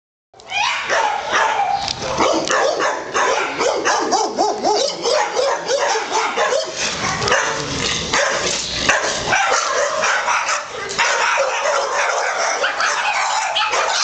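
Many kenneled shelter dogs barking and yipping at once, their calls overlapping into a continuous loud din.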